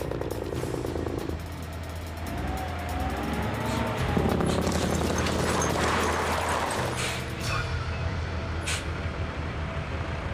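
Semi-truck diesel engine running, mixed with background music, with a louder rushing noise for a few seconds in the middle.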